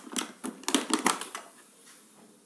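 Hard plastic tool case being unlatched and opened: a quick series of sharp plastic clicks and knocks from the latches and lid over the first second and a half.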